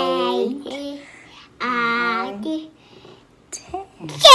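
A toddler's voice calling out two drawn-out, sing-song words about a second and a half apart, as he counts aloud.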